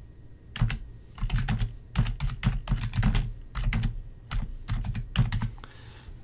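Computer keyboard being typed on: a quick, irregular run of keystrokes starting about half a second in, typing out a short phrase.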